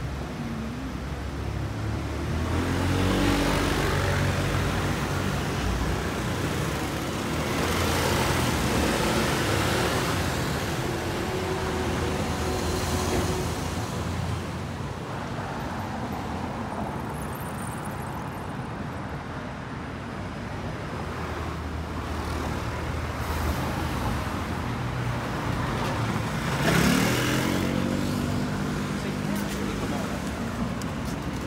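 City street traffic: several motor vehicles pass one after another, their engine and tyre noise swelling and fading. One vehicle's engine rises in pitch as it accelerates near the end, the loudest moment.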